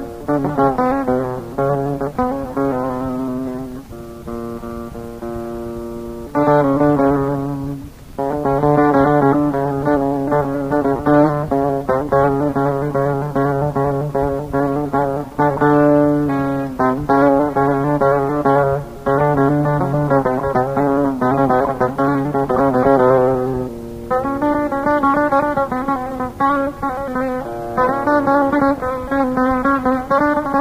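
Instrumental passage of a Kurdish folk song: a plucked string instrument plays quick runs of notes over a steady low drone. About four seconds in, it drops to a quieter, held passage for a couple of seconds, then the runs resume.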